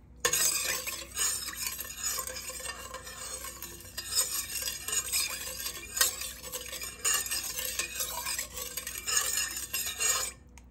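Metal spoon stirring coconut milk in a stainless-steel pot: a continuous liquid swishing, with scattered clinks and scrapes of the spoon against the pot's side.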